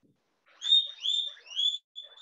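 An animal chirping: a run of short, high chirps, each rising in pitch, starting about half a second in.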